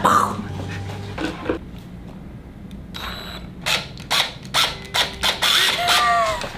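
People laughing quietly, in short breathy bursts through the second half, ending in a falling voiced laugh.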